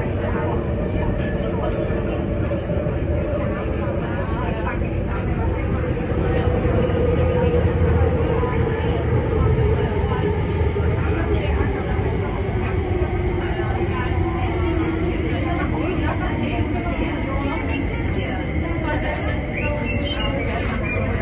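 Tuen Ma line electric train, a Kinki Sharyo–Kawasaki-built multiple unit, running with steady rumble heard from inside the car. Its traction motor whine falls steadily in pitch through the middle of the stretch as the train slows for Siu Hong station.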